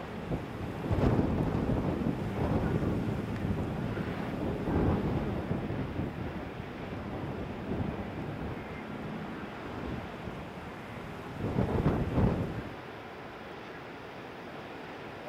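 Wind buffeting the microphone in gusts, strongest about a second in and again near the end, over the steady wash of breaking ocean surf.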